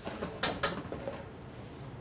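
Cookware being handled: two short clinks about half a second in, over a low, steady kitchen background.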